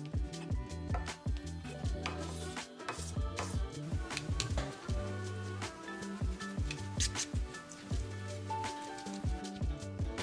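Chef's knife chopping soft hearts of palm on a plastic cutting board: many short, irregular taps on the board, heard over background music with a steady bass line.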